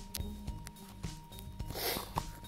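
Handling noise on a phone held in the hand: scattered light knocks and finger rubs on the body, with a short scraping rub near the end. Faint background music runs underneath.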